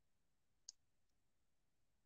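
Near silence, with one faint short click about two-thirds of a second in and a fainter one soon after.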